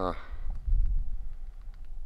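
Wind buffeting the microphone: a gusty low rumble that swells loudest just under a second in.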